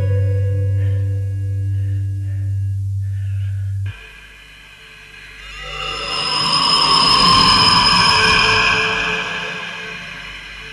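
A low, steady held note of dramatic score that cuts off abruptly about four seconds in. Then a rocket-engine sound effect swells up loudly and fades away as the lunar hopper lifts off.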